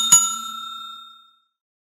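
A bell-like ding sound effect, struck twice in quick succession, ringing on and fading away within about a second and a half: the notification-style chime of a subscribe-button animation.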